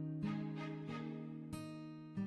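Background music of slow plucked guitar notes, three in a row, each ringing on into the next.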